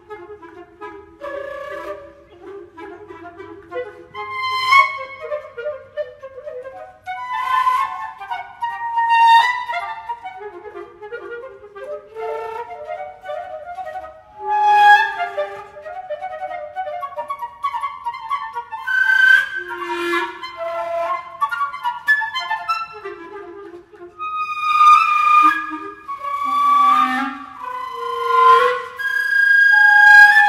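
A flute and a clarinet playing together in a contemporary chamber piece: overlapping held notes mixed with short notes that have sharp, accented attacks.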